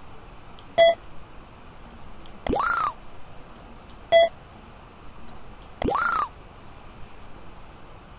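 Electronic confirmation sounds from a Master3DGage portable measuring arm and its Verisurf measuring software as points are taken and a line is fit. A short, loud beep is followed about 1.7 s later by a half-second tone that sweeps up and curves back down, and the pair comes twice.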